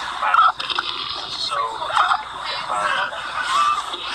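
A man's high-pitched, uncontrollable laughter: wavering squeals broken by gasps.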